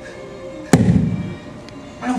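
A single sudden heavy boom about three-quarters of a second in, its low rumble dying away within a second, over soft sustained background music.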